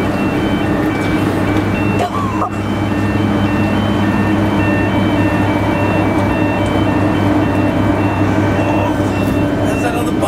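Deep, steady machinery hum from a large cargo ship close by. Over it runs a repeating pattern of short high electronic beeps that alternate between a few pitches, and a brief sliding call cuts in about two seconds in.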